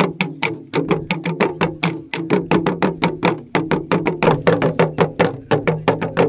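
Fast, steady drumming, about seven strokes a second, over a low steady drone.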